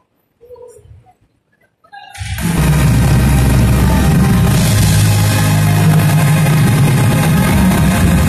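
Live band starting up loudly about two seconds in after a quiet stretch: full band with heavy bass and drums, played through a concert sound system.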